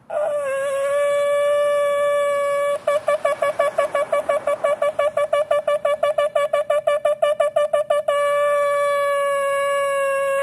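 Shofar blown in a long steady note, then a rapid run of short staccato blasts, about seven or eight a second, from about three to eight seconds in, then a long held note again.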